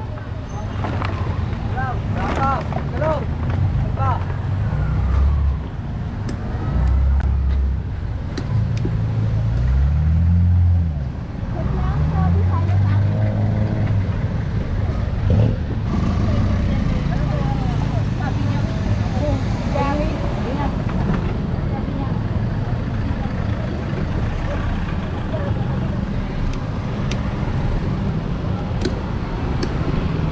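City street traffic: a low engine rumble with an engine's pitch rising and falling a few times around the middle as it pulls away and shifts, amid motorcycles and jeepneys passing.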